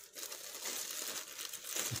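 Thin clear plastic wrapping crinkling as hands grip and turn the helmet inside it, a continuous irregular crackle.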